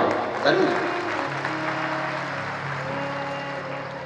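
A large audience applauding, slowly dying away, while held instrumental notes come in about a second in as the accompaniment to a devotional song starts.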